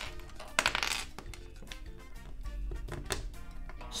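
Plastic LEGO bricks clicking and clattering on a table as they are handled, set down and pressed together, with a busier clatter about half a second to a second in. Soft background music plays underneath.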